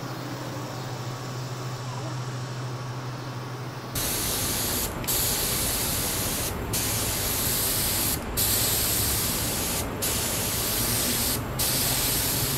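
A low, steady background hum, then about four seconds in a compressed-air gravity-feed spray gun spraying polycrylic. It gives a loud, even hiss, broken by a short pause about every second and a half between passes.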